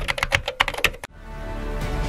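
Rapid computer-keyboard typing clicks, about a dozen in the first second, as a typing sound effect; then the clicks stop and music builds up steadily.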